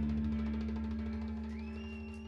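A live band's closing chord ringing out and fading steadily, with a rapid rolling flutter running through it. A thin high whistle rises in near the end.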